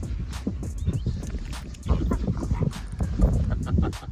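Dogs making short vocal noises close by as they play, over background music.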